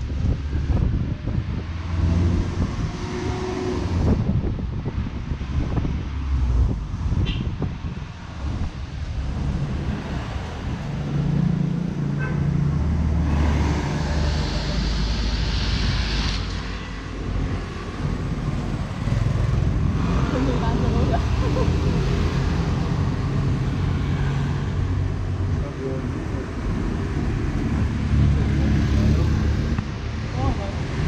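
Engine and road noise of an open-sided shuttle vehicle driving, with motorbikes and cars passing in main-road traffic, which is relatively loud.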